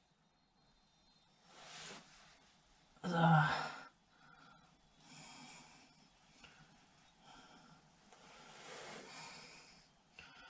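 A man breathing out audibly a few times, soft sigh-like exhalations, with one short spoken word about three seconds in; quiet between them.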